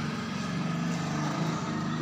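A steady low hum in the background, like an engine running, holding level throughout with no sudden events.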